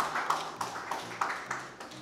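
A small audience applauding: a dense scatter of hand claps that thins out and fades towards the end.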